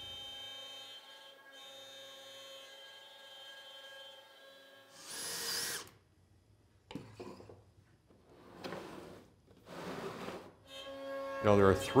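CNC router spindle cutting ash with a quarter-inch upcut bit. It is heard faintly under quiet background music, with a brief loud whoosh about five seconds in.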